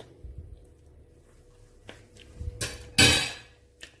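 A metal spoon knocking against glass dishes: a light knock about two and a half seconds in, then a louder clatter about three seconds in that fades over half a second.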